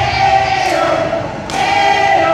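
Cheer squad chanting a cheer in unison: many voices holding long shouted notes, a fresh one starting about a second and a half in. The music's heavy bass beat cuts off right at the start.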